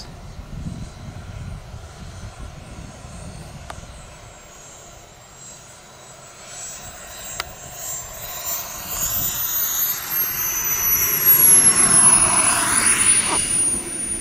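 Model turbine jet engine of an RC T-45 Goshawk at low throttle on landing approach. Its high whine grows louder over the last several seconds as the jet comes in close, and it slides down in pitch before levelling off.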